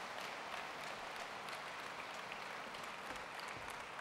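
Audience applauding, steady and fairly faint.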